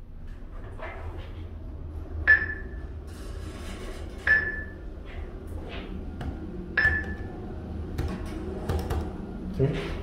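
Three short, high pings, each ringing briefly and spaced unevenly about two seconds apart, over a steady low hum and faint background voices.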